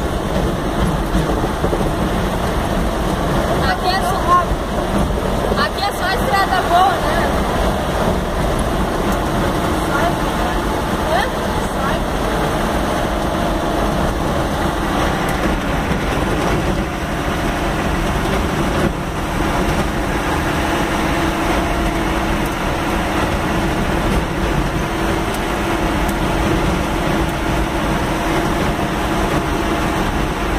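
Vehicle engine and tyre noise heard from inside the cab while driving on a wet dirt road, loud and steady, with a steady engine hum in the second half.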